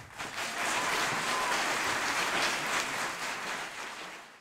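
Applause from many hands, steady and then fading out near the end.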